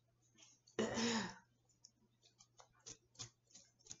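A woman briefly clears her throat about a second in. After that come a series of faint light clicks and taps, as tarot cards are handled and laid on the table.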